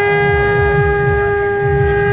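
A conch shell (shankh) blown in one long, steady, unwavering note, over a low rhythmic pounding.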